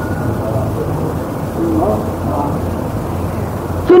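Low, steady rumbling background noise with faint, indistinct voices in it.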